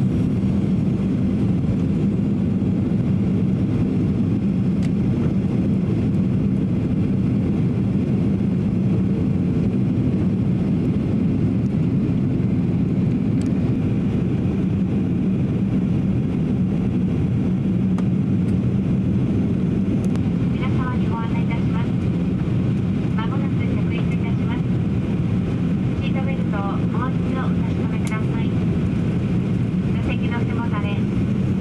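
Steady cabin noise inside a Boeing 737-800 descending on approach: a constant low rush of airflow and hum from the CFM56 turbofan engines.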